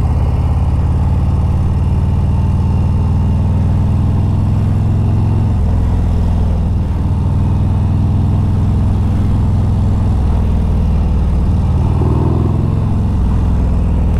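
Harley-Davidson Road Glide's V-twin engine running steadily while riding, with a low, even exhaust note and wind and road noise over it.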